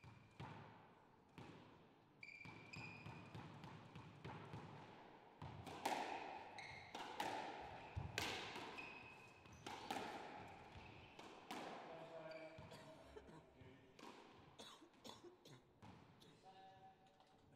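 Squash rally: sharp knocks of the ball off rackets and walls about once or twice a second, loudest midway, with short high squeaks of court shoes on the wooden floor between hits.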